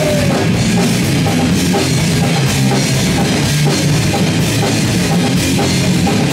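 A punk rock band playing loud live: drum kit keeping a steady beat under bass guitar and electric guitar.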